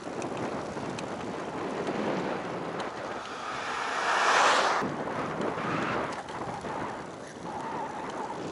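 Wind rushing over the microphone of a moving bicycle, with a pickup truck passing about halfway through: its road noise swells to the loudest point and then drops away abruptly.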